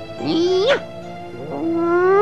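Two rising, yowling cries over sustained background music: a short one just after the start and a longer one that climbs steadily in pitch toward the end.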